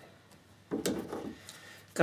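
Quiet handling noise of fingers working a crimped spade connector on the inverter's circuit board: a sharp click about a second in, with some rubbing around it and a fainter click shortly after.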